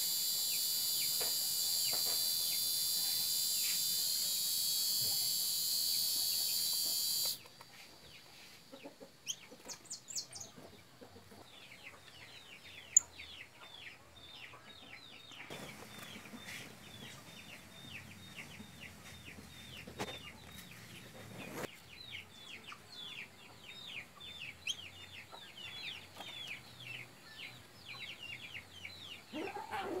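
A loud, steady, high-pitched insect chorus cuts off suddenly about seven seconds in. After a quieter stretch with one sharp click, birds chirp in quick, short falling notes, several a second, through most of the rest.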